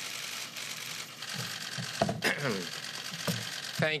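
Many camera shutters clicking rapidly and continuously, a dense press-photographer clatter as a new speaker comes to the podium, with a brief voice about two seconds in.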